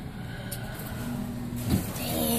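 Steady arcade background noise with a low hum from the claw machines coming in about halfway through, and a brief low thump near the end.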